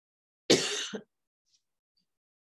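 A person clearing their throat with a cough-like burst, once, about half a second long and starting about half a second in.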